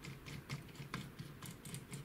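Faint, scattered clicks and ticks of a knob being wound down a threaded rod on a laser-cut wooden Z-focus lifter, lowering a Longer Ray5 diode laser module.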